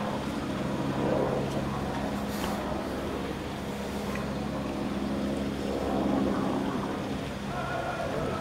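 A vehicle engine idling steadily, a low even hum with overtones.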